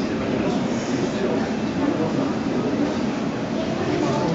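Model train running along the layout's track, a steady rolling rumble, over the murmur of visitors talking.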